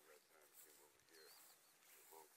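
Near silence outdoors: faint, distant voices with faint high chirps from birds recurring every second or so.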